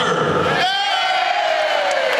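One long held shout from a single voice through a microphone, starting about half a second in with a brief waver, then slowly falling in pitch.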